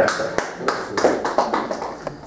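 A few people clapping lightly and unevenly, a dozen or so sharp claps that fade away.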